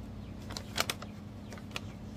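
A paper instruction sheet being handled, giving a few sharp crackles, the loudest just before the middle and a smaller one near the end, over a steady low hum.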